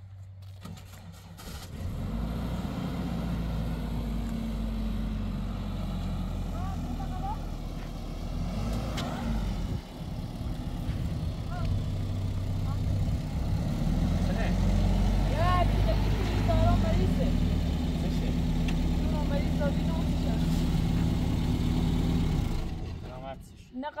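Pickup truck engine starting up about a second and a half in and running, its pitch rising and falling a couple of times. It cuts off shortly before the end.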